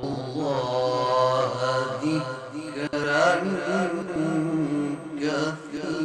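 A man reciting the Quran in melodic tajwid style (qirat), singing long held notes that bend and waver in ornamented runs, amplified through microphones.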